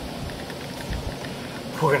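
Steady background hiss with a few brief low rumbles, then a man starts speaking near the end.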